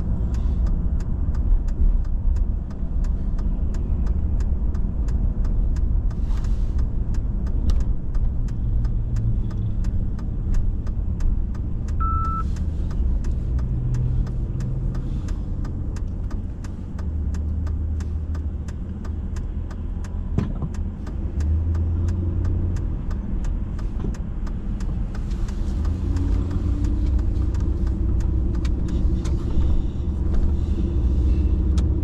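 Car engine and road noise heard from inside the cabin while driving: a steady low rumble, with the engine note rising in pitch a few seconds before the end. A short high beep sounds once, about twelve seconds in.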